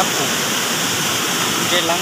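Shallow stream water running over rock close by, a steady, fairly loud rushing noise with no let-up.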